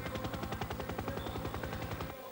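Helicopter rotor chop: a rapid, steady beat of about twenty pulses a second over a low hum.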